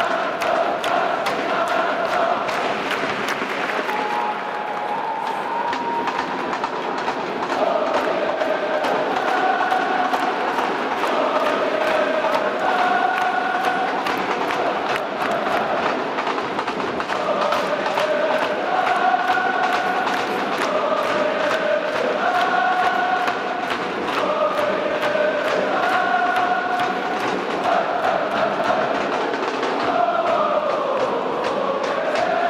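Football supporters chanting a repeating melodic song in unison, with a steady beat kept under the singing.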